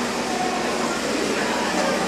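Escalator running with a steady low hum, under the murmur of a crowd in a busy concourse.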